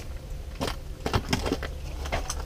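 Several light clicks and knocks, scattered unevenly through two seconds, over a low steady hum.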